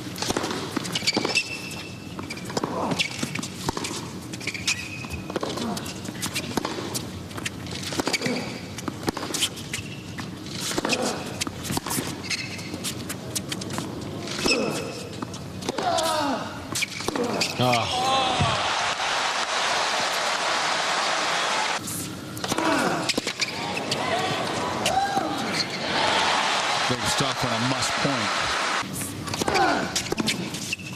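Tennis rally on a hard court: sharp racket strikes on the ball and ball bounces, then the crowd calls out and breaks into cheering and applause about halfway in, with another stretch of applause later.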